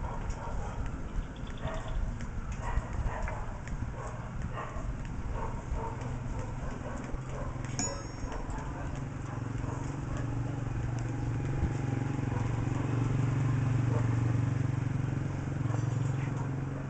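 Irregular light metallic taps and clicks of hand tools on steel reinforcing bars as rebar stirrups are tied onto a column cage. A low steady rumble swells in the second half.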